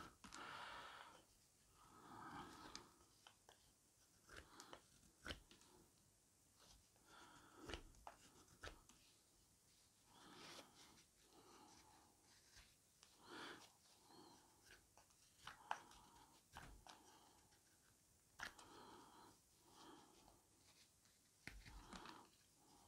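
Faint, repeated slicing of a carving knife through fresh green wood, each cut a short scraping rasp as a shaving peels off, coming every second or two at an uneven pace with a few small clicks between.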